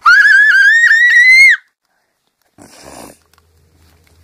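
A loud, high-pitched squeal that wavers and rises slightly, lasting about a second and a half, followed near three seconds by a short rustle.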